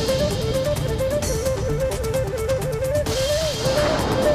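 Background score music: a single wavering instrumental melody line over a fast, steady rhythmic beat.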